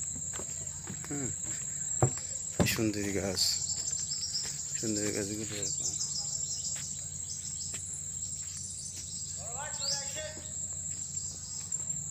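Steady, high-pitched drone of insects in a mangrove forest, one unbroken shrill note throughout, with a few sharp knocks and brief bits of voices over it.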